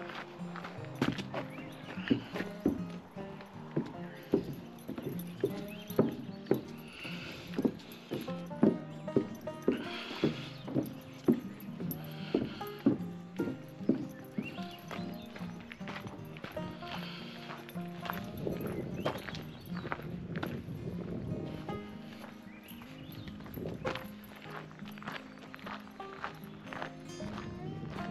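Footsteps on the planks of a wooden footbridge, about three steps every two seconds, through roughly the first half, under steady background music that carries on alone afterwards.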